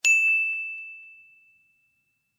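A single high, bell-like ding from a logo animation: struck once, then ringing out on one clear tone that fades away over about a second and a half.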